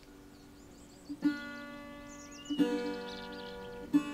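Background music: a plucked string instrument sounding three ringing notes, about a second and a half apart, the first a little over a second in. Faint birdsong can be heard behind it.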